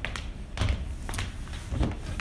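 A few soft knocks and clicks over a low rumble: handling noise and footsteps from someone walking up to a car's front door with a hand-held camera.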